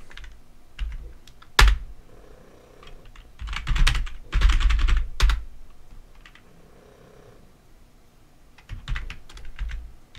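Typing on a computer keyboard in bursts as terminal commands are entered: a single sharp keystroke, then a quick run of keys a few seconds in, and another short run near the end.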